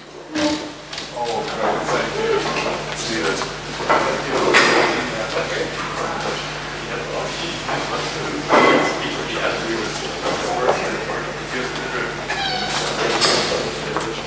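Indistinct chatter of several people in a large hall, with a few louder voices standing out, over a steady low electrical hum.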